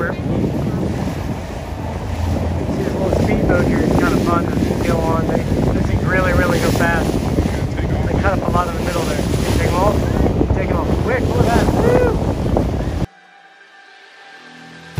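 Wind buffeting the microphone over a party fishing boat under way, its engine and the rush of water running steadily, with voices in the background. It all cuts off abruptly about a second before the end.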